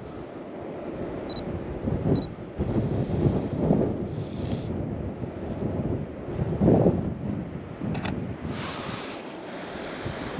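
Strong wind buffeting the microphone in uneven gusts, with louder surges at about two, four and seven seconds. Two brief high beeps come in the first few seconds and a sharp click about eight seconds in.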